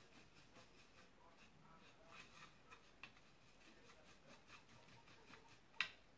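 Faint small ticks and scrapes of a paintbrush stirring and dabbing paint in a plastic palette well, with one sharper click near the end.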